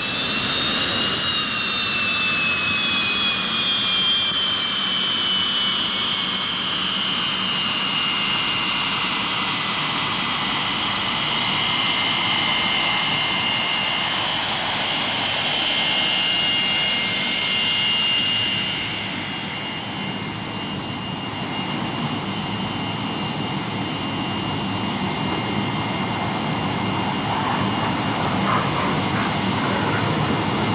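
Jet aircraft engine running close by: a high multi-tone whine rises in the first second, then slowly falls over the next twenty seconds, over a steady rushing roar that thickens again near the end.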